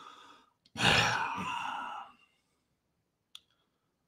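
A man's soft breath, then a loud, long sigh into a close headset microphone about a second in. A single short click follows near the end.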